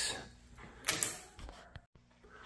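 A single sharp click about a second in, with a thin high whine and a short rattling tail, then a fainter tick just before the end.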